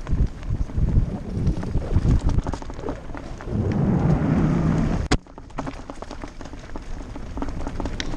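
Mountain bike rolling fast down a rocky gravel trail: tyres crunching over loose stones and the bike rattling, with wind buffeting the microphone. Just past halfway the noise swells for about a second and a half and is cut off by a sharp click.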